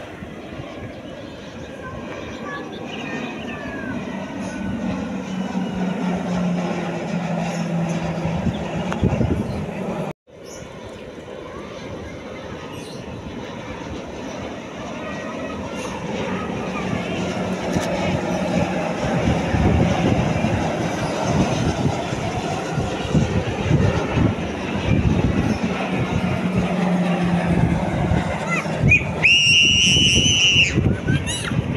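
Propeller engines of Grob G 120TP turboprop trainers droning as several aircraft pass overhead in formation, the sound swelling and sliding in pitch as they go by, with a brief dropout about ten seconds in. Near the end a high steady whine sets in.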